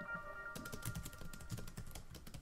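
Rapid clicking of computer keyboard typing, a quick run of keystrokes starting about half a second in, over the fading last notes of a short chiming musical jingle.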